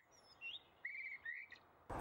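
Small woodland birds chirping: a few short, faint chirps spaced out over a quiet background.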